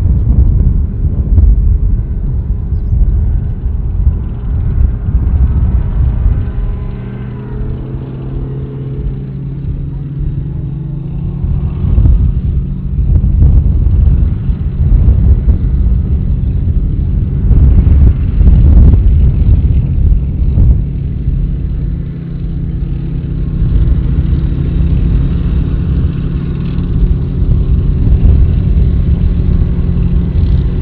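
Heavy military vehicle engines running loudly as robotic combat vehicles and tracked armoured vehicles drive past on a gravel road, with a steady low rumble. The engine note rises and falls about seven to ten seconds in, and the sound swells louder around twelve and nineteen seconds in as the vehicles come close.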